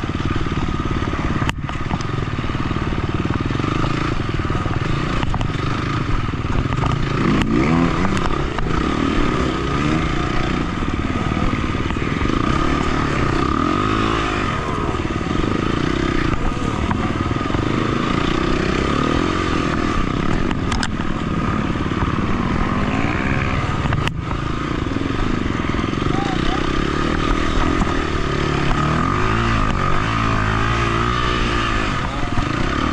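KTM 250 XC-F four-stroke single-cylinder dirt bike engine running under throttle on a muddy trail, its revs rising and falling repeatedly, with a few sharp knocks along the way.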